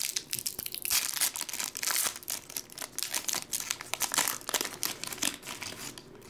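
Foil wrapper of a trading card pack crinkling and tearing as it is pulled open by hand, a dense run of crackles throughout.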